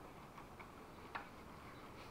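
Faint, scattered clicks of a hand screwdriver turning a screw through a metal bracket into a wooden sill board, with one sharper click about a second in.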